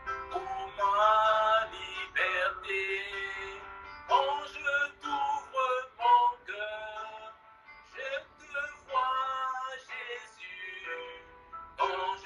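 A man singing a slow French worship song solo, with long held notes and short pauses for breath, heard through a video call's audio played on a computer speaker.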